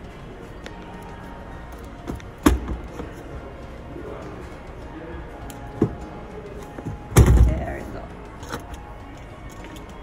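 Thuds of a 2021 Toyota 4Runner's third-row seatbacks being folded down onto the cargo floor: three knocks, the loudest about seven seconds in.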